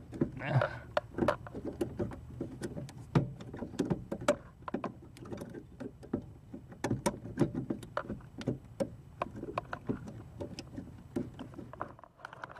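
Irregular sharp clicks and small metallic knocks of hands working the brake pedal linkage under a 1983 Ford Ranger's dash, pushing the brake pedal and booster pushrod apart to free the brake light switch.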